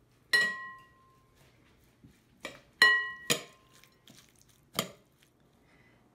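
Two metal spoons clinking against a glass bowl while tossing a shredded cabbage salad. There are about five separate clinks, and two of them leave a short ringing tone from the glass.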